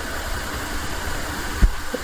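Steady background running noise with a low rumble, like a motor or engine idling, and one short low bump about one and a half seconds in.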